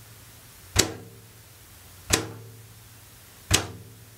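Meinl Sonic Energy wave drum (ocean drum) struck with a light hand tap against its shell, the frame-drum 'chick' edge sound: three taps about a second and a half apart, each with a short ring from the drum.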